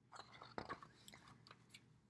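Faint handling noise: scattered small clicks and rustles over near silence.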